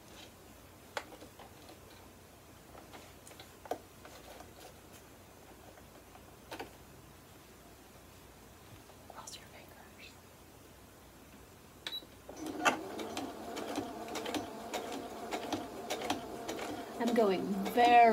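Domestic electric sewing machine starting about two-thirds of the way in and stitching steadily through thick layers of denim stays and linen binding, done slowly to avoid breaking the needle on the zip-tie bones. Before it starts there are only a few light clicks.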